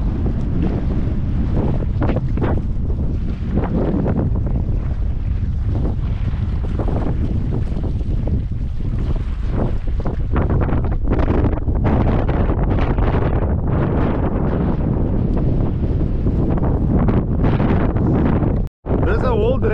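Wind buffeting a head-mounted action camera's microphone: a loud, steady low rumble that goes on throughout, with a few brief rustles in the second half.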